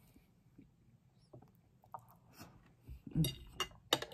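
Close-up mouth sounds of someone chewing a soft mouthful of mashed potato, gravy and peas, faint at first. A few sharper clicks and a soft thud come near the end, the loudest click just before the end.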